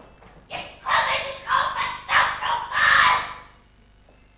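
A person's voice shouting loudly in a run of four or five bursts over about three seconds.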